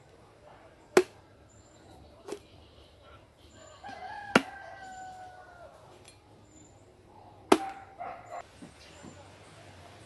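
Machete chopping into a coconut: four sharp strikes, about a second in, again a second later, once in the middle and once late, the first and last the loudest. A rooster crows once in the middle, a falling call about a second and a half long.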